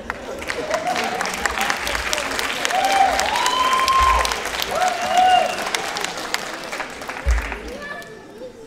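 Audience applauding in a theatre hall, with a few voices calling out over the clapping; the applause swells through the middle and dies down near the end.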